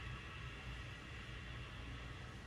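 Ujjayi breathing: a slow, steady exhale through a narrowed throat, heard as a faint, even, hollow hiss.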